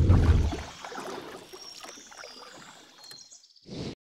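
Sound design under an animated TV channel ident: a low hit that fades over the first half second into faint swishing, water-like noise, ending with a short burst near the end that cuts off suddenly.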